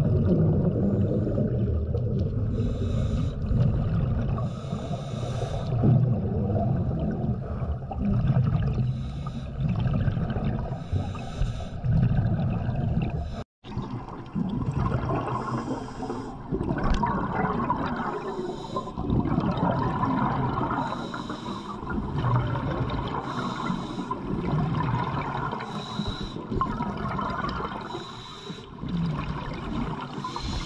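Underwater sound of scuba diving: a diver's regulator hissing on each breath every two to three seconds, with bubbles gurgling over a low rumble of water. The sound drops out briefly about halfway.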